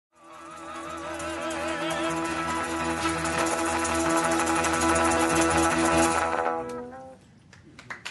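Music: a band's song ending on a long held chord, with a wavering high note over it early on. It dies away about seven seconds in.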